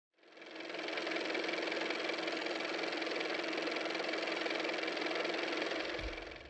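Sound effect of an old car engine running steadily, fading in over the first second.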